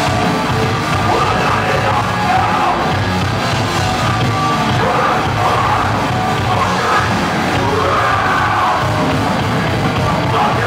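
Live metal band playing at steady full volume: distorted guitars and drums with yelled vocals.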